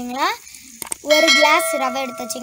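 A child's voice speaking, with a sharp click about a second in, followed by a ringing, bell-like chime: the notification sound effect of a subscribe-button animation.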